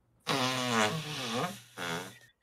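A person's mouth sound effect of an inflatable deflating: a long, wavering, buzzy rush of air like a pool toy letting its air out, lasting about a second and a half, then a shorter second one near the end.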